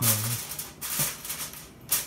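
Aluminum foil crinkling and rustling as hands press it down over a pot's rim to seal it, in irregular bursts with a sharp crackle near the end.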